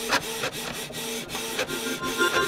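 Printer-mechanism sound effect: a print-head carriage running along its rail, a steady whirring hum broken by irregular clicks.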